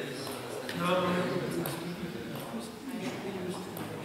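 Indistinct chatter of several people talking in a large sports hall, with a few faint clicks scattered through it.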